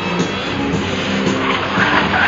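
Music playing over a car running an autocross course, with engine and tyre noise.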